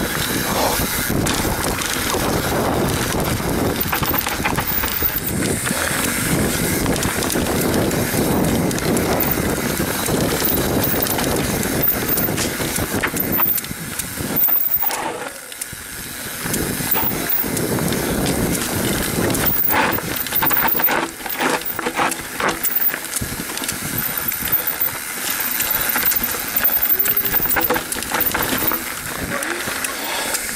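Ride noise from a YT Capra enduro mountain bike descending a dirt forest trail: wind rushing over the camera microphone, tyres running on the dirt, and the bike clattering over bumps in irregular bursts.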